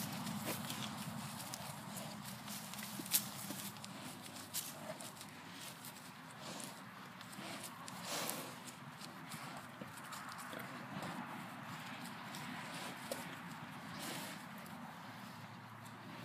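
Young cattle milling close together, their hooves shuffling and stepping on grassy ground, with a few sharp clicks and knocks scattered through.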